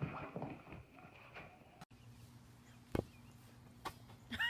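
Faint, irregular scuffling from a puppy scrambling on a couch. After a cut, two sharp knocks about a second apart over a low steady hum, as a bulldog puppy tumbles about beside a large ball.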